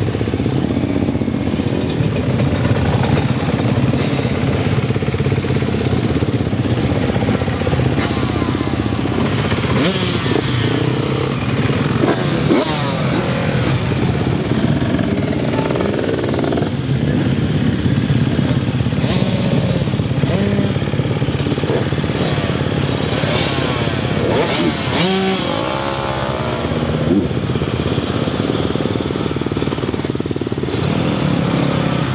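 Several motocross bike engines running at low speed close by. Revs rise and fall as bikes pass, around the middle and again a few seconds before the end.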